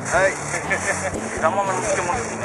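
Voices talking briefly over a low steady hum.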